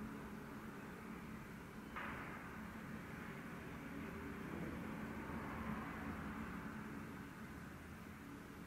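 Faint city street ambience: a steady hiss with a low hum, the background changing abruptly about two seconds in.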